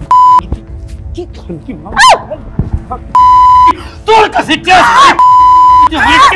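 A steady electronic bleep tone sounds three times over shouted dialogue: briefly at the start, then for about half a second a little past the middle, and again near the end. These are censor bleeps laid over the heated lines.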